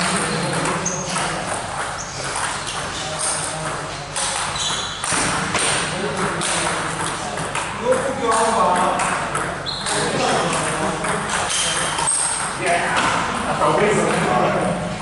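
Table tennis rally: repeated sharp clicks of the ball off the bats and bouncing on the table, with people talking.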